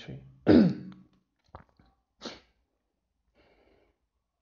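A man clears his throat once, sharply, the sound falling in pitch. A faint click and a short breathy noise follow within the next two seconds.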